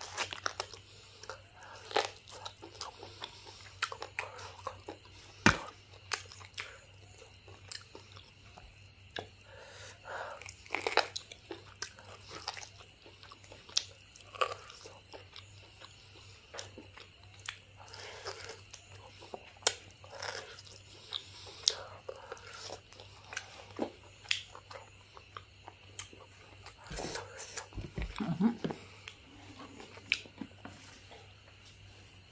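Close-miked biting and chewing as cooked meat is gnawed off a beef bone, with scattered crunches and wet mouth sounds.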